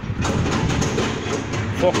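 A motor vehicle engine running: a steady rushing noise with a low hum that comes up just after the start.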